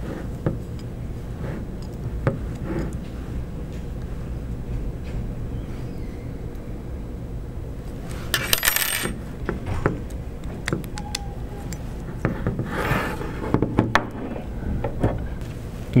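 Small clicks and clinks of hands working small metal hardware against clear acrylic printer parts, with two brief louder handling noises about eight and thirteen seconds in, over a steady low hum.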